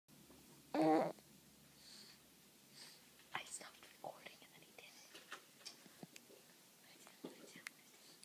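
A baby's brief chuckle about a second in, followed by soft breathy sounds and small clicks.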